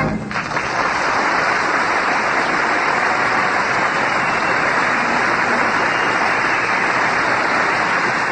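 Studio audience applauding steadily after a song, a dense even clapping that starts dying away right at the end.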